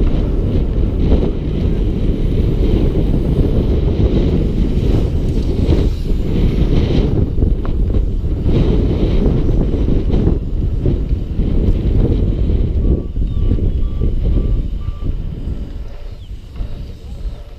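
Wind buffeting the microphone of a bike-mounted camera, mixed with the rumble of BMX tyres rolling over the paved and dirt track. Near the end, a run of about five short, evenly spaced high beeps.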